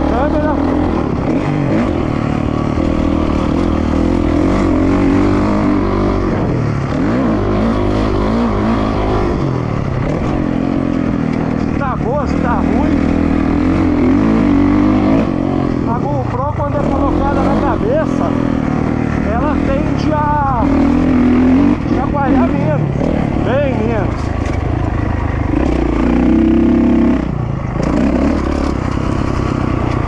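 Dirt bike engine running hard on a motocross track, heard from a camera mounted on the bike, its pitch rising and falling again and again as the throttle opens and closes.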